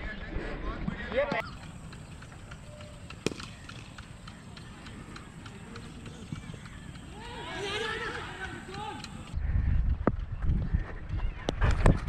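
Faint distant shouts of players across a cricket field. About nine seconds in, a sudden low rumble of wind buffets a helmet-mounted camera's microphone, with a few sharp knocks.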